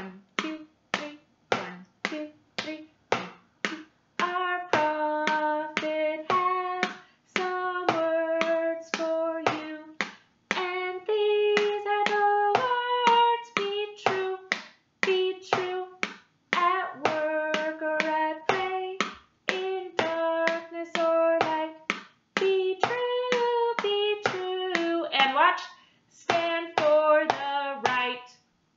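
A pen drumming on a plastic Tupperware container and its lid, a steady beat of about two to three taps a second. About four seconds in, a woman's voice starts singing over the taps.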